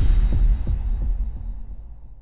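Cinematic intro sound design: a deep bass boom hits at the start as a rising sweep ends, with a few short low thuds during the first second, then it slowly fades away.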